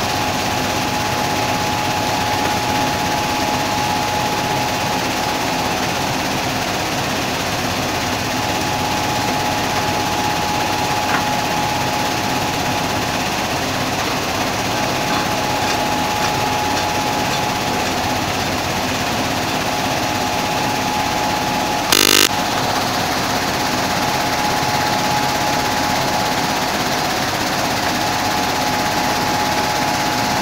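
Sand washing plant running: a vibrating dewatering screen driven by two vibration motors shakes wet sand, with a steady mechanical din and a steady whine over it. A brief sharp knock about two-thirds of the way through.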